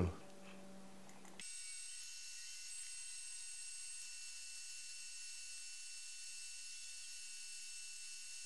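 Faint background noise with no event in it. A low steady hum for about a second and a half, then it switches abruptly to a steady high hiss with thin, constant high-pitched whine tones.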